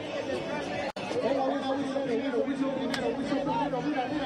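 Crowd of spectators chattering, a steady babble of many voices. The sound drops out for an instant about a second in.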